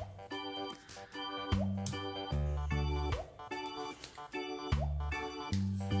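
Background music: a keyboard-style tune with a bass line and chords changing every half second or so.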